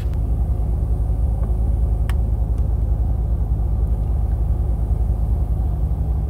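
A BMW M6's twin-turbo V8 idling steadily, heard from inside the cabin. There is a single faint click about two seconds in.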